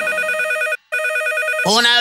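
Electronic telephone ringer trilling in two bursts of just under a second each, with a short break between them. A voice starts calling out near the end.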